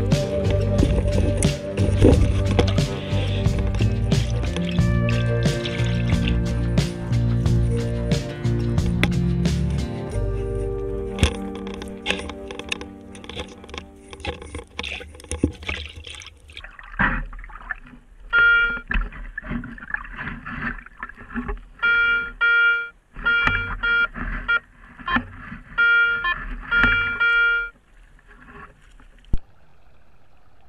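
Background music with a steady beat, fading out about halfway. Then a metal detector gives repeated short, high beeps as its coil is swept through shallow creek water, signalling a metal target.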